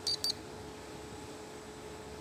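Digital multimeter on continuity test giving two quick, high beeps as its probes touch the legs of a power transistor taken off a washing machine control board. The beep does not hold on, and the transistor reads as not shorted. A steady hum runs underneath.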